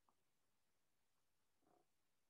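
Near silence: a pause with no sound above the noise floor.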